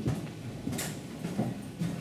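Footsteps of a man walking: a few irregular steps and light knocks.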